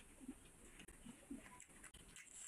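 Faint, short low 'mm' hums from a man eating by hand, two of them, with soft wet clicks of chewing and of fingers in curry and rice.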